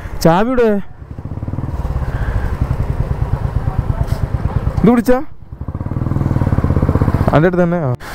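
Splendor motorcycle's single-cylinder engine running with a rapid, even beat, growing louder twice, with a man's voice briefly at the start, in the middle and near the end.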